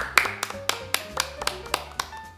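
Two people clapping their hands in a brief round of applause, about four claps a second, over background music.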